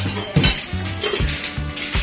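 Plates and cutlery clinking on a set table, a few sharp clinks over background music with a bass line.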